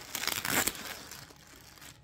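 Clear plastic bag of yarn skeins crinkling as it is handled, loudest in the first second and fading off.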